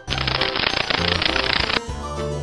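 A beetle sound effect: a dense, rapid rattle that starts abruptly and cuts off shortly before the end, over light background music.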